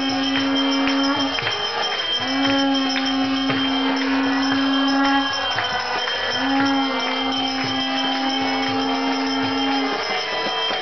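Conch shell blown in three long held blasts for the closing of a temple altar, each blast starting with a short upward slide in pitch. Sharp strikes about twice a second sound beneath it.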